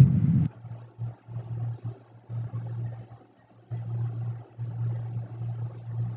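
A low background hum that breaks off and comes back several times, with nothing else over it.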